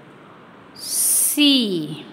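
A woman's voice saying a drawn-out letter "C" ("see"): a loud hiss about a second in, then a long vowel falling in pitch.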